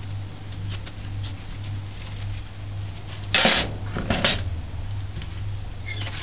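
A steady low electrical hum, with two short rustling scrapes a little past halfway through.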